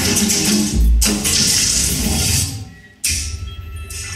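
Electroacoustic music for amplified cello and digital audio: a dense, hissy electronic texture with short low notes and a heavy low thump about a second in. It fades out, then breaks back in suddenly about three seconds in as a low rumble with thin, steady high tones.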